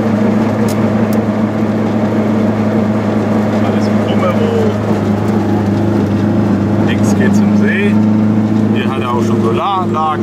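Goggomobil's small air-cooled two-stroke twin engine running at a steady speed, a constant droning hum heard from inside the car's cabin while driving.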